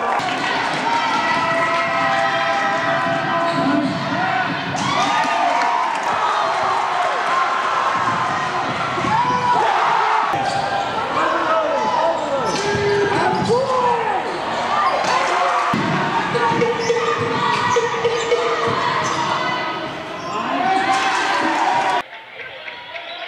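Basketball game sound in a gym: the ball bouncing on the hardwood floor, sneakers squeaking in short chirps, and a crowd and players' voices throughout.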